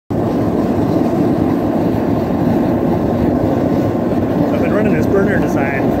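Forced-air gas ribbon burner forge, built from tapped cast iron pipe with a row of small nozzles, running steadily with its electric blower: a continuous loud rushing noise.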